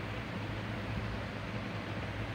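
Steady fan noise: an even hiss with a low hum underneath.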